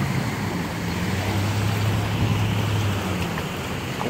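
A vehicle engine running steadily with a low hum, under a wash of wind and moving floodwater.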